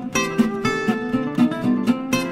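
Intro music led by a plucked and strummed acoustic guitar, with notes falling at a brisk, even pace.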